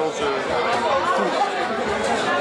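Indistinct chatter: several people talking over each other, with no words clear.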